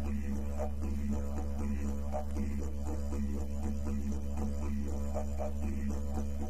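Didgeridoo music: a steady low drone with rhythmic pulses about twice a second.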